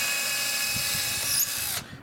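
Cordless drill drilling a pilot hole through pegboard into the wooden frame beneath, its motor a steady whine that winds down and stops near the end.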